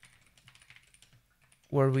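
Typing on a computer keyboard: a quick, irregular run of light key clicks as a terminal command is entered.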